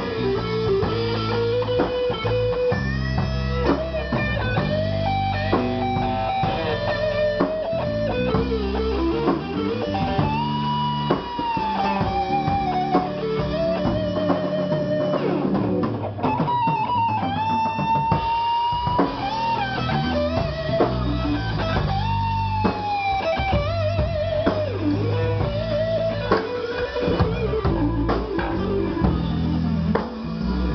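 Live blues band: a lead electric guitar on a Fender Stratocaster plays a solo of long held and bent single notes over bass and a drum kit.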